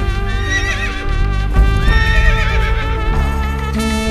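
Two horse whinnies, about half a second and two seconds in, over the song's instrumental introduction music.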